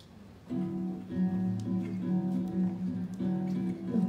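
Acoustic guitar starts strumming chords about half a second in, a rhythmic samba-style accompaniment introducing the next song.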